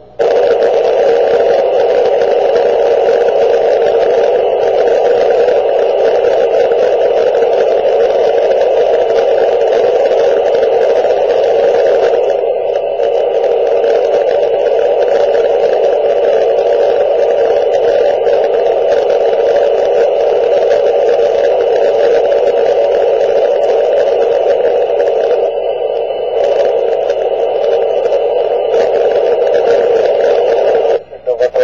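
Steady static hiss from a handheld two-meter FM transceiver's speaker with the squelch open and no voice coming through. It comes on suddenly, with a couple of brief dips in the middle.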